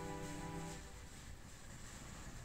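Background music: a held chord that stops under a second in, leaving faint room noise.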